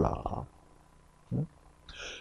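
A man's lecturing voice trailing off, then a pause broken by one brief, short vocal sound about halfway through and a breath drawn in just before he speaks again.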